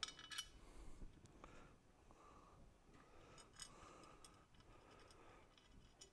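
Near silence, with a few faint clicks and taps as the windshield mounting bracket and its bolt are handled and lined up: one at the start, one about a second and a half in, and another a little past the middle.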